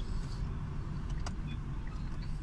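Steady low rumble of a car's engine and tyres heard from inside the cabin while driving, with a faint click just over a second in.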